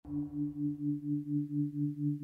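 Opening of synthesizer intro music: a low sustained tone pulsing evenly about four times a second.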